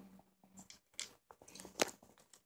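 Faint clicks and crackles of small plastic kit parts being handled, with a sharper click near the end as the red wax glue square is set down on the green plastic diamond tray.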